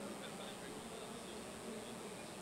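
Room tone of a large hall picked up through the sound system: a faint steady hiss with a thin, constant high-pitched whine, and no distinct event.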